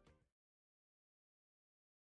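Near silence: the last faint tail of the background music dies away within the first moment, then nothing at all.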